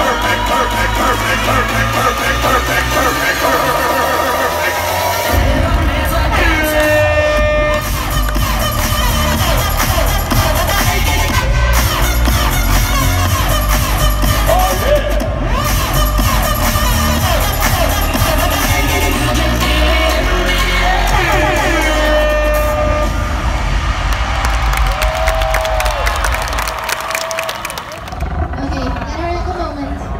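Loud dance music with a heavy, steady bass beat, playing for a street dance routine. It stops abruptly near the end.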